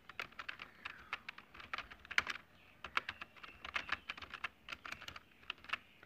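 Computer keyboard typing: a run of irregular, quick key clicks, with a brief lull a little before halfway.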